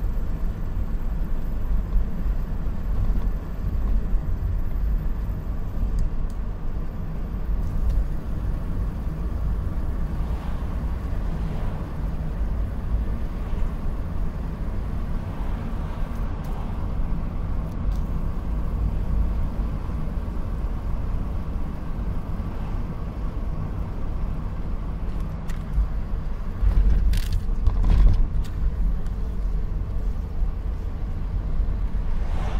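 Steady low road and engine rumble inside the cabin of a 2007 Ford Taurus on the move, with a brief louder bump and a few clicks near the end.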